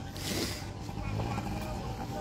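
Steady outdoor background noise with a low rumble and a brief soft hiss near the start.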